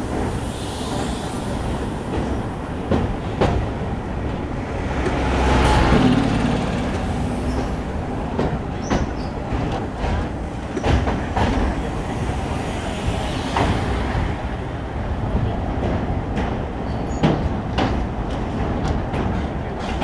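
Train running over a steel truss railway bridge, heard from on board: a steady rumble of wheels on rails with many irregular clicks and clanks, swelling louder about six seconds in.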